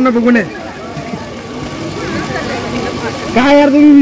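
People's voices: a voice is heard briefly at the start and again near the end, with quieter chatter of other people in between.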